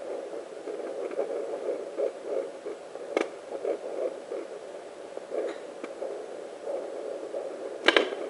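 Handheld fetal doppler's loudspeaker playing the pulsing blood-flow sound picked up by its ultrasound probe on a pregnant belly, a steady rhythmic beat about two pulses a second. A sharp click comes about three seconds in and another near the end as the probe is moved.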